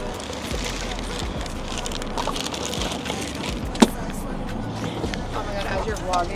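Steady background noise with faint voices, and a single sharp knock about four seconds in.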